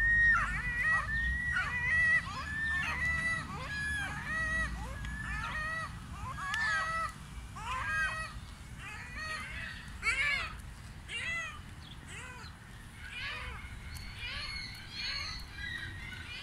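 A flock of gulls calling: many short, overlapping calls, dense at first, then thinning out and growing fainter in the second half.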